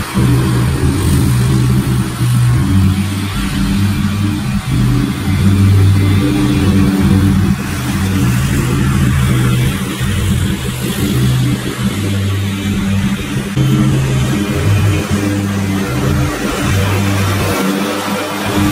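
Zero-turn ride-on mower engine running steadily as it cuts tall overgrown grass, with background music carrying a low bass line.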